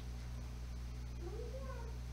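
A child's brief, faint vocal sound that rises and falls in pitch about a second and a half in, over a steady low electrical hum.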